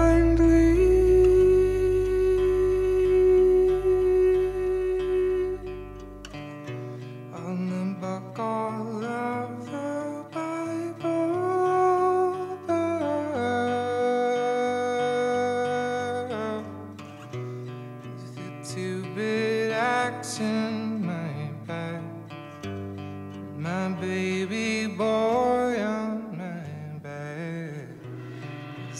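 Band music played live in the studio: acoustic guitar with an electric guitar and a soft sung vocal. A deep held bass note drops out about six seconds in.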